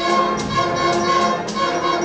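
Youth concert band playing, the winds and brass holding full chords, with accented strokes about twice a second.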